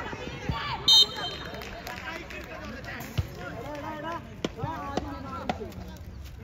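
Footballers and sideline onlookers shouting across an open pitch, with the occasional thud of the ball being kicked. A brief shrill high tone about a second in is the loudest sound.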